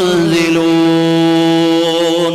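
A man's voice reciting Arabic in a chanted, melodic style, dropping slightly in pitch at the start and then holding one long, steady note.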